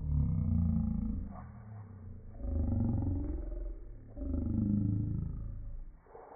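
Voices played back in slow motion, pitched far down into deep, drawn-out groans. They come in three long swells.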